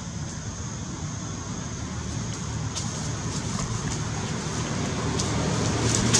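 Low rumbling noise that grows steadily louder, with a steady high thin whine above it and a few short crackles, like dry leaves being stirred, from about three seconds in.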